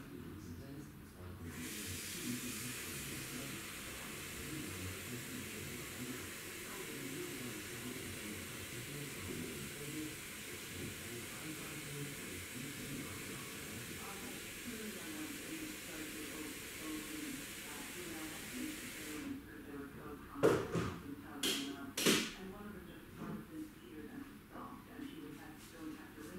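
Water hissing steadily for about seventeen seconds, starting and cutting off abruptly, then a few sharp knocks and clatters.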